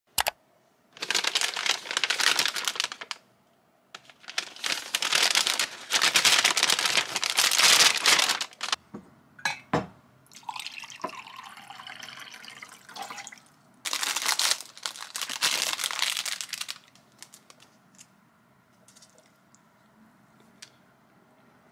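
Paper bag and plastic wrap crinkling as a bag of wrapped donuts is opened and a donut is unwrapped by hand: three loud bouts of rustling with short pauses, a few sharp clicks near the middle, then quiet near the end.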